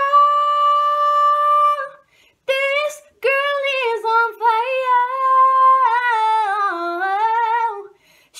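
A woman singing unaccompanied and without words: a long steady held note for about two seconds, a short break, then a longer run of notes that winds downward in pitch near the end.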